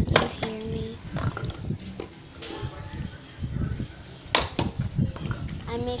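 A partly water-filled plastic bottle landing on concrete during bottle flips, giving several sharp knocks; the loudest comes about four seconds in. Voices are heard faintly between the knocks.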